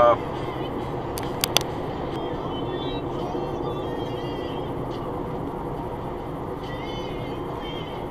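Steady road and engine noise inside a moving car, with a few sharp clicks about a second and a half in.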